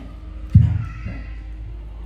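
A brief vocal sound from an elderly woman close to a handheld microphone, about half a second in, over a steady low hum.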